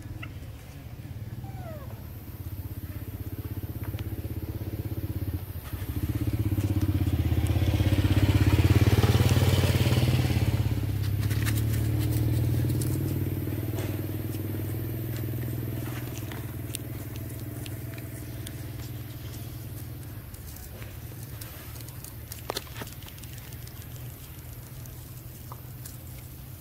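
A motor engine that swells to its loudest about eight to ten seconds in, then slowly fades, like a vehicle passing by.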